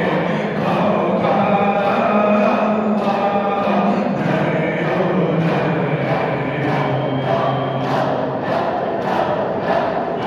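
Turkish ilahi (Islamic devotional hymn) with dhikr chanting: voices sung over a sustained low drone and a steady beat about twice a second.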